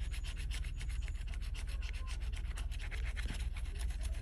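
Handheld scratcher tool scraping the latex coating off a Florida Lottery 100X the Cash scratch-off ticket's winning-numbers area, in quick, even, repeated strokes.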